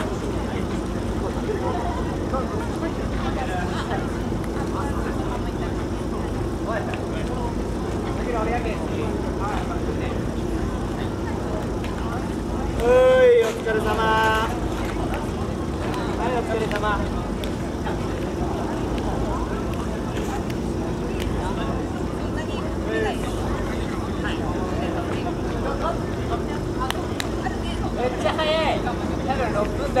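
Outdoor crowd chatter over a steady low hum, with one loud shouted call about halfway through, rising in pitch then held for about a second.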